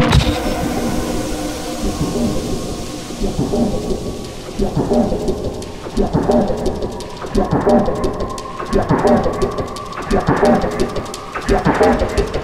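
Thunder-and-rain sound effect in the intro of a halftime drum and bass track: a loud thunderclap at the start that rumbles away under a steady rain hiss. From about four seconds in, a sampled voice talks over it in a repeating, rhythmic pattern.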